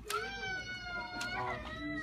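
A small child's long, high-pitched wail, one drawn-out cry lasting most of the two seconds, wavering a little in pitch.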